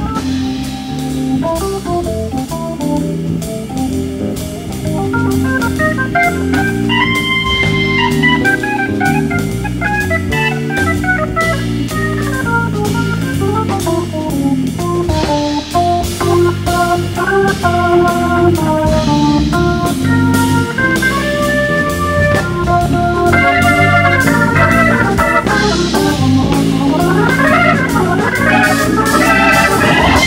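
Hammond organ playing fast melodic lead lines and held chords over a jazz band's drums and bass. Near the end the music builds with a run of rising sweeps.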